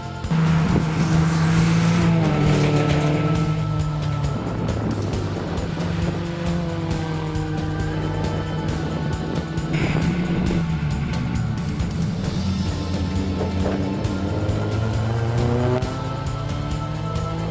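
GReddy Scion tC race car's engine under hard acceleration, pitch climbing through each gear and dropping back at each shift, several times over, with music underneath.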